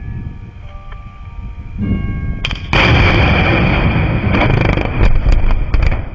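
Blasting in an open-pit mine: a charge goes off about two and a half seconds in, and a loud, heavy noise carries on for about three seconds with several sharp cracks near the end.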